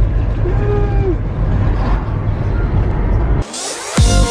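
Low rumble of a moving car, road and wind noise, with faint voices under it. It cuts off suddenly about three and a half seconds in, and a rising swish leads into music with a beat.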